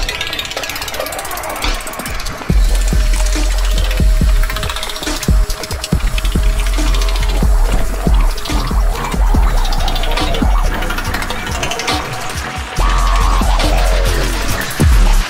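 Dubstep-style electronic bass music: a deep sub-bass comes in hard about two and a half seconds in, under dense, clicky glitch percussion and a held synth tone, with a falling synth sweep near the end.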